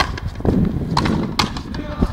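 Frontenis rally: the rubber ball cracking off strung rackets and the fronton wall in several sharp hits, the loudest about a second and a half in.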